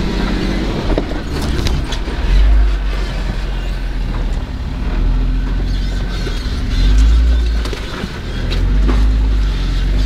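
Jeep engine and drivetrain running at low speed, heard from inside the cabin, as the Jeep crawls down a rocky trail. The low rumble swells and eases with the throttle, and the body and loose gear give occasional knocks and rattles over the rocks.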